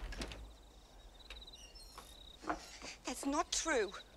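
Crickets chirping in short, high trills, with a few knocks right at the start.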